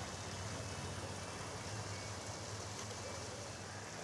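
A running fountain's falling water gives a faint, steady wash of splashing.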